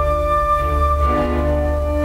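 Recorded orchestral music from an opera overture, played back from a laptop: long held chords, moving to a new chord about a second in.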